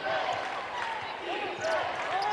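A basketball dribbled on a hardwood court, with sneakers squeaking, while the arena crowd chants "Defense!"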